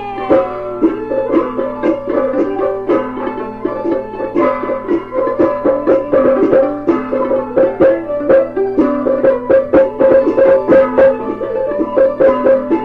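Traditional Taiwanese opera (gezaixi) accompaniment: plucked string instruments play a quick melody of picked notes in an instrumental passage. It comes from an old radio recording.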